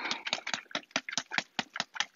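A container of water-based stain being shaken hard by hand, giving quick, regular knocks at about seven a second.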